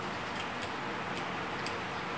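A few faint, irregular small clicks from a tripod head being handled and adjusted, over a steady background hiss.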